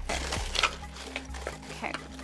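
Pink paper packing wrap rustling and crinkling as it is pulled and unwrapped by hand from around an item in a cardboard box.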